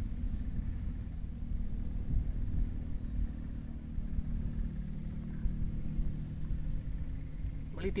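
Low, steady rumble with a faint hum in it, with no distinct events.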